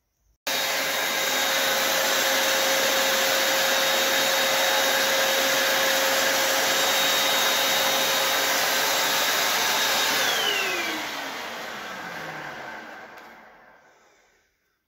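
Mac Allister 500 W electric paint sprayer's turbine blower switching on abruptly and running steadily, a rush of air with a steady whine, as it sprays paint. Over the last few seconds it is switched off and winds down, its whine falling in pitch as the sound fades away.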